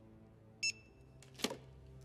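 Handheld barcode scanner at a shop till giving one short high beep about half a second in, then a light clack of merchandise near the end.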